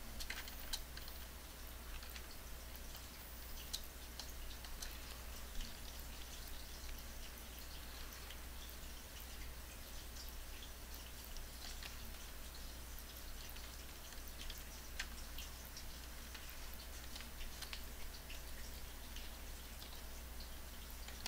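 Light, scattered clicks and taps from working at a computer keyboard, over a steady low hum.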